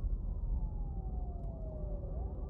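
An emergency-vehicle siren wailing: one long tone falling steadily in pitch, then starting to rise again at the very end, over a low rumble.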